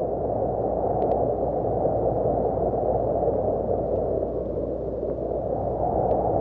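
Steady low rumbling noise, the sound-effect bed of an animated logo intro, with a faint crackle about a second in.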